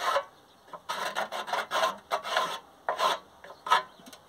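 A marking pencil scratching across a rusty steel plate in short back-and-forth strokes, drawing a line along a steel square: about eight rasping strokes in a row.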